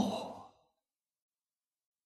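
The tail of a man's spoken word trailing off into breath, then dead silence from about half a second in.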